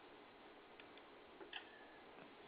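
Near silence: faint steady hiss of the recording, with a few faint ticks around the middle.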